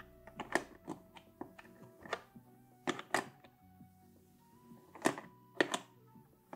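Wooden puzzle pieces clicking and knocking against one another and the wooden frame as they are handled and fitted, in irregular taps about a dozen times, loudest around the middle and near the end. Quiet background music plays underneath.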